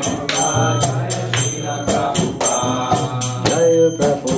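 Devotional mantra singing over a steady low drone, with hand cymbals or a jingle striking about twice a second.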